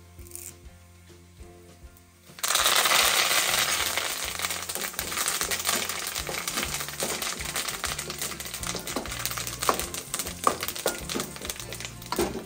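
Curry leaves and green chillies hitting hot oil in an aluminium kadai: a sudden loud sizzle starts about two seconds in and carries on steadily. The metal ladle clinks and scrapes against the pan as the tempering is stirred.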